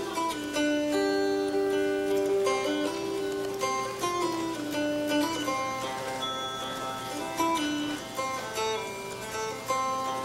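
Appalachian mountain dulcimer played solo: an instrumental theme of plucked, ringing notes, each held about half a second to a second before the next.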